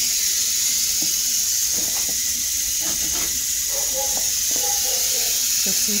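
Beef burger patties sizzling on an electric contact grill: a steady high hiss of frying fat.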